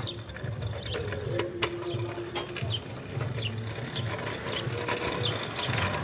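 A scooter rolling over brick pavers, its wheels and frame giving a steady mechanical rattle with light clicking.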